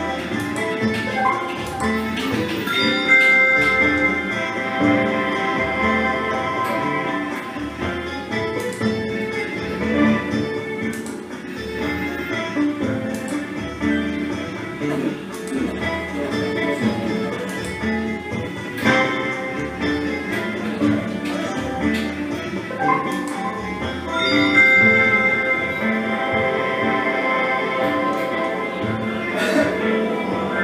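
Slot machine game music during a free-spin round: a looping melodic tune with a steady low beat, with short clicks and chimes as the reels spin and stop.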